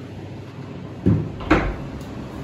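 A wooden double door being pushed open, with two thuds about half a second apart, the second one sharper.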